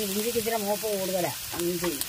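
Finely chopped ginger sizzling as it fries in oil in an aluminium pan, stirred with a coconut-shell ladle. A person talks over it for most of the time.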